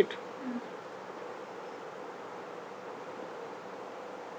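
Faint steady hum and hiss of room noise with one thin held tone, unchanging throughout.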